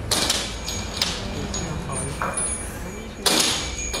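Scratchy rustling bursts of a metal ear pick working inside an ear canal, loudest at the start and again near the end, with faint voices underneath.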